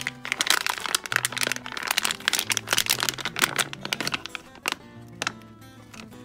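Crinkling and crackling of a small clear plastic baggie being handled, dense for the first four seconds or so and then thinning out, over background music with a steady bass line.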